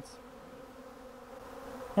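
A cloud of honey bees buzzing in flight around a newly stocked hive: a steady, fairly faint hum.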